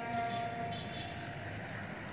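A pause between two phrases of the azan (Muslim call to prayer) from a mosque loudspeaker: the held note of the previous phrase dies away right at the start, leaving low, steady outdoor background noise until the next phrase begins.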